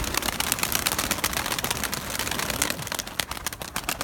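Domestic pigeons' wings flapping and clapping as a flock comes down and lands, a dense, rapid crackling clatter.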